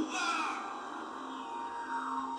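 Faint anime soundtrack playing low: background music, with a thin steady high tone in the second half.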